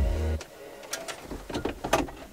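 Background music stops within the first half second. It is followed by irregular light plastic clicks, knocks and scrapes as the stereo head unit is handled and set back into the dashboard opening.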